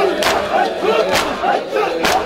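A crowd of men chanting a noha together, cut by loud unison chest-beating (matam) strikes just under a second apart, two of them here.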